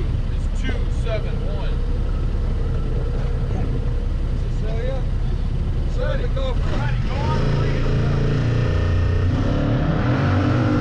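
Yamaha Wolverine X2 side-by-side's parallel-twin engine idling at the drag start line, then revving up about seven seconds in as it launches, the engine pitch climbing as it gathers speed, with voices heard over the idle before the launch.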